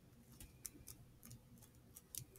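Near silence with a few faint, irregular clicks as fingers press and handle a rolled beeswax candle.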